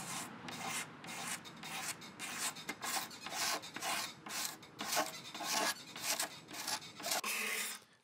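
Utility knife blade scraping old finish off the edge of a wooden cabinet top: short, rapid scratching strokes, about three a second.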